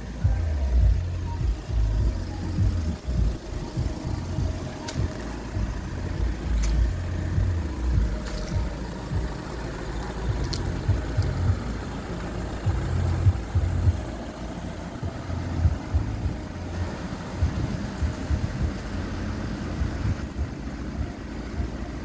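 A 2012 VW Tiguan's 2.0 TDI diesel engine idling, under an uneven low rumble.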